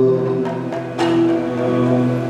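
Yakshagana music accompaniment: a steady drone under a few ringing drum strokes. The strongest stroke comes about a second in and leaves a pitched tone.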